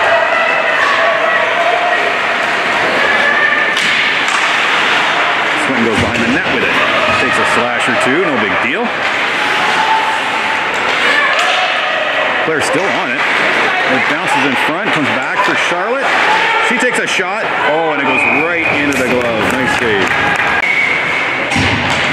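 Indistinct overlapping voices calling out in an echoing ice arena, with scattered sharp clacks of sticks and puck against the ice and boards.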